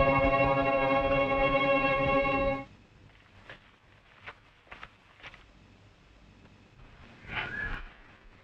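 Background film score holding one sustained chord that cuts off suddenly about two and a half seconds in. After that it is near quiet, with a few faint ticks and a brief short sound near the end.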